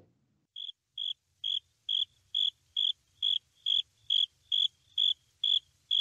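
Cricket chirping: short, even chirps a little over twice a second, starting about half a second in and growing slightly louder.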